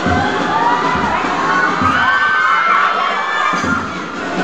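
A crowd of schoolchildren cheering and shouting, many voices overlapping and rising and falling, with a few low drum thuds underneath.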